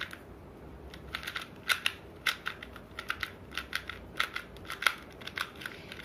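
Plastic 2x2 Rubik's cube layers clicking as they are turned, many sharp irregular clicks in quick runs starting about a second in: the moves of an algorithm that brings the yellow face to the top.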